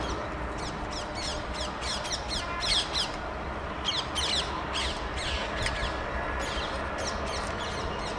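Birds calling: clusters of short, shrill, falling squawks repeated throughout, over a steady low background rumble.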